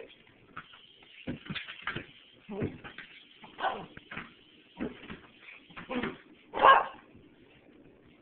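Poodle making a string of short, separate noises, about one a second, the loudest near the end.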